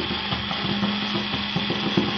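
Small cordless electric screwdriver running with a steady, even hum, driving a screw through a brass nameplate into a wooden door.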